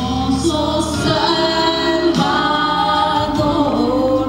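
A woman singing into a handheld microphone, holding long notes, over musical backing.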